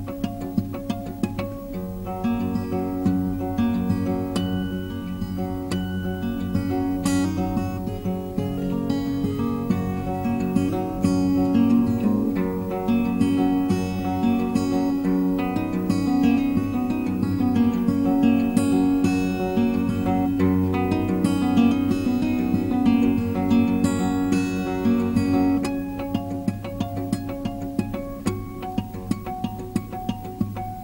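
Solo acoustic guitar playing an instrumental passage with no singing. The playing grows busier and fuller about two seconds in and thins out again near the end.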